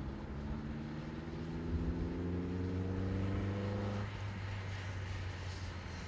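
Four-cylinder engine of an Atalanta sports car pulling along a road, its note rising steadily for about four seconds as it accelerates, then the note drops away.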